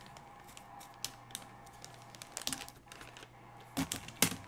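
Plastic comic packaging being handled on a table: scattered light clicks and taps, a few closer together about two and a half seconds in and a slightly louder cluster near the end.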